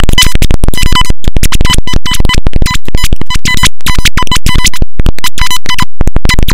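Heavily distorted, clipped glitch-edit audio: loud noisy sound chopped into rapid stutters, with a steady beep-like tone cutting in and out many times a second.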